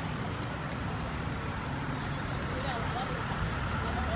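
Busy street ambience: a steady low rumble with indistinct voices chattering in the background.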